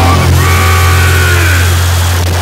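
Loud harsh-noise track: a dense wall of distorted noise over a steady deep hum, with a cluster of pitched tones that slide downward about halfway through.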